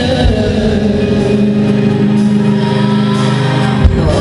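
Live concert music from a slow R&B ballad, played loud through an arena sound system and recorded from the audience, with long held notes and a low thump near the end.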